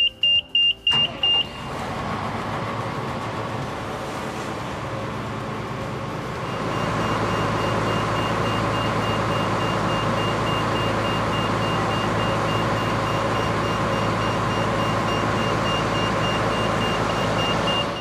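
Keestrack B4 mobile jaw crusher being started for a jaw reset: a run of quick high warning beeps as the key is turned, then the machine starts about a second in and runs steadily. About six seconds in it gets louder, and a high beeping sounds over the running machine.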